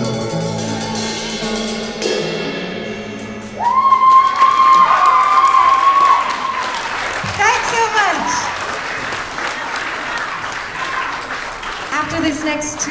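A live band's final chord rings out and fades over the first few seconds, then the audience breaks into applause and cheering, with one long high cheer about three and a half seconds in.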